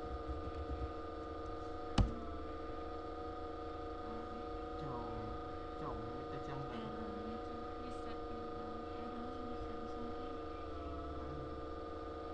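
Steady hum made of several constant tones, with faint voices in the background. One sharp click comes about two seconds in.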